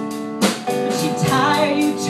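Live band music: a woman singing over a strummed acoustic guitar, with a regular beat.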